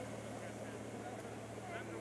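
Faint outdoor ambience: a steady low hum under a light background haze, with a faint voice near the end.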